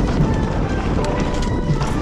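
Mountain-bike ride noise: a steady rush of wind on the helmet-mounted microphone and tyres rolling over a dirt trail, with scattered knocks and rattles from the bike, under background music.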